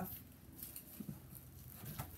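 Faint rustling and handling noise of a rolled canvas print being unrolled and held up, with a few soft crinkles.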